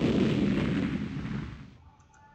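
Slide-transition sound effect from a presentation: a sudden, loud rush of noise that fades away near the end.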